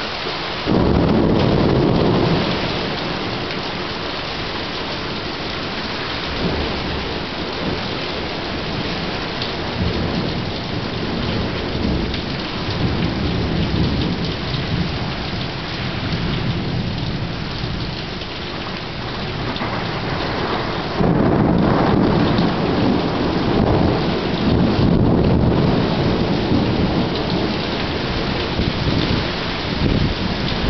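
Thunderstorm: steady rain throughout, with thunder. A sudden loud thunderclap about a second in rumbles for a second or two. A long rolling peal of thunder starts about two-thirds of the way through.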